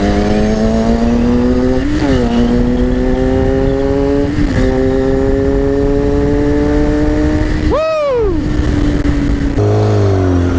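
Sport bike engine pulling under way, heard from the rider's helmet camera with wind rumble. The engine note climbs steadily and drops briefly twice with upshifts. About eight seconds in there is a quick sharp rise and fall in revs, and the note changes again near the end as the bike slows.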